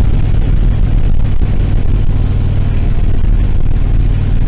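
Motorcycle engine running steadily at cruising speed, with wind and road noise on the microphone over it.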